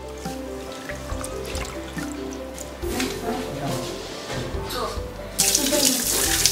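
Background music with steady held notes and a few faint clinks. About five seconds in, cloudy rice-washing water starts pouring from a metal pot into a concrete sink, a loud, even rush as the rice is rinsed.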